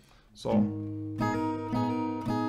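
Acoustic guitar, capoed at the first fret, playing a barred G minor 7: a single bass stroke about half a second in, then two downstrokes on the top strings, each left ringing.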